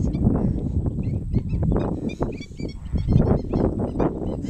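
A large flock of flamingos calling: a chorus of many short, overlapping calls, over a steady low rumble.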